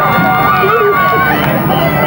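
Many voices shouting and cheering at once from a crowd of players and spectators.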